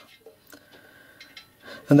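Hands handling a soldered brass pannier water tank and its fittings, with one faint click about half a second in. Speech starts near the end.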